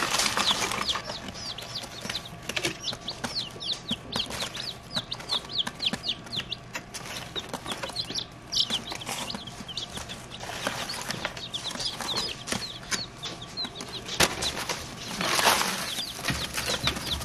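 Three- to four-day-old chicks peeping, a constant stream of short, high, falling peeps. Wood shavings rustle as they are poured into the cardboard box brooder at the start and again near the end.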